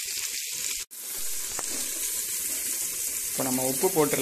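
Onions, tomatoes and coriander frying in oil in an aluminium pressure cooker pan, a steady sizzling hiss; the sound drops out for an instant about a second in.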